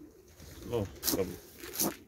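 Domestic pigeons cooing in the loft, with two short scrapes of a spoon in a bucket of grain feed, about a second in and near the end.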